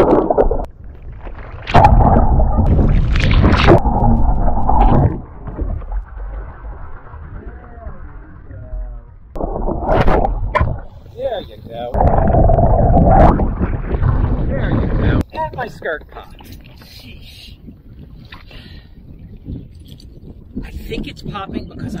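A sea kayak capsizing and rolling back up: a splash as it goes over, then water rushing and sloshing heard muffled with the camera underwater, in two loud spells a few seconds long. Quieter, broken splashing follows near the end as the boat comes upright.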